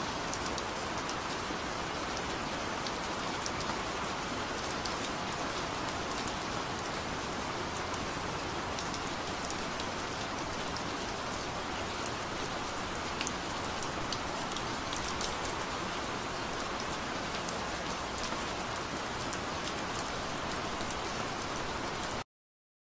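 Steady rain-like hiss with scattered small crackles, a sound effect on the soundtrack of the video being watched.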